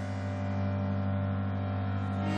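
Background music: a sustained low synth drone of steady held tones, slowly swelling in level.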